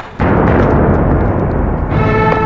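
A film sound effect: a sudden loud blast of noise, like an explosion, starting a moment in and lasting under two seconds before music takes over at the end.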